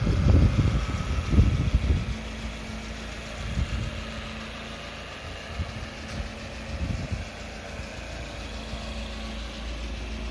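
Wind buffeting the microphone for about the first two seconds, then an engine idling with a steady low hum.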